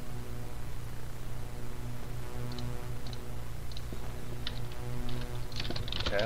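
A steady low hum that throbs slightly throughout. From about halfway in come a few light clicks at the computer's mouse and keys, growing more frequent near the end.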